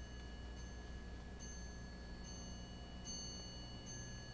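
Faint room tone: a low electrical hum under a steady high-pitched whine, whose upper tones cut in and out about once a second.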